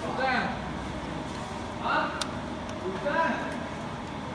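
Brief snatches of a voice, three short utterances, over a steady low hum, with one sharp click about two seconds in.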